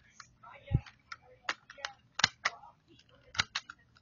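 Sharp plastic clicks and knocks, about eight in all with a duller knock a little under a second in, from a toy BB pistol's slide and stretched coil spring being forced back together.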